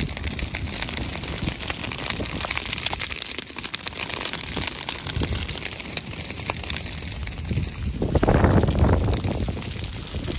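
Dry prairie grass crackling and popping as a low line of flames burns through it, a dense steady patter of small snaps. About eight seconds in, a louder low rush of wind on the microphone swells for a second or so, then eases.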